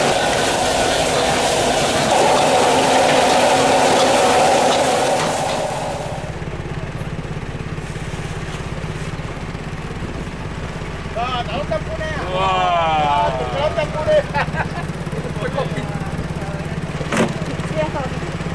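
Gas wok burner running at full flame with a tap running beside it, a loud steady rush, for about the first six seconds. Then the low steady hum of an idling fishing-boat engine, with voices over it near the middle.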